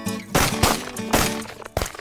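Two shotgun shots about a second apart, fired at a flushed rooster pheasant, over background music.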